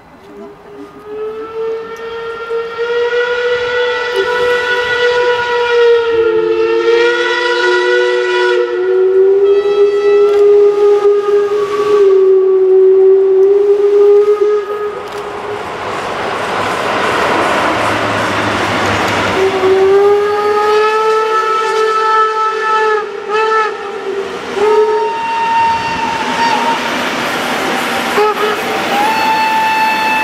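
Steam locomotive whistle sounding repeated long blasts of two or more notes together, bending slightly in pitch as each blast starts and stops. Midway, a loud rushing noise takes over as the locomotive passes close, then the whistle sounds again in long and short blasts as the coaches roll by.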